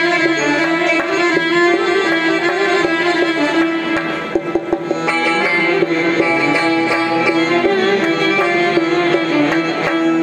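Live Uzbek instrumental music: a doira frame drum beats a steady rhythm under accordion and a stringed instrument playing the melody, with one note held underneath throughout.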